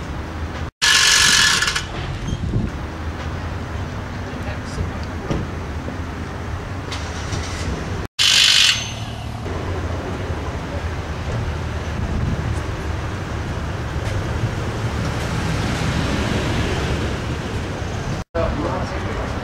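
Steady rumble of road traffic, with a vehicle passing and swelling louder near the end. Twice, right after a short dropout, a loud hiss lasts about a second.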